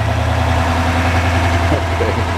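An engine idling steadily, a deep, even hum with no change in speed.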